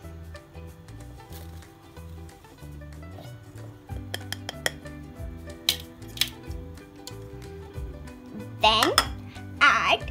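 Bowls knocking and clinking as powdered sugar is tipped from one bowl into another, a handful of light, sharp clinks between about four and six seconds in, over background music.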